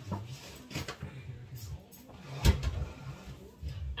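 A single sharp knock about two and a half seconds in, amid quieter handling noises as things are moved about in a kitchen.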